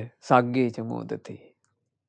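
Speech only: a man speaking Sinhala, stopping about a second and a half in.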